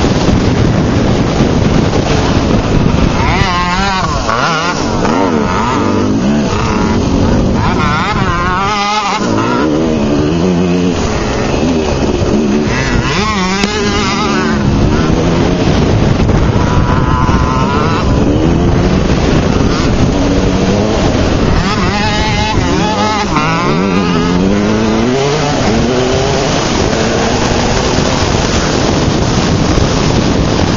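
Small pee-wee dirt bike engine revving, its pitch rising and falling every few seconds as the throttle is worked, under a constant loud rush of wind and engine noise on the microphone.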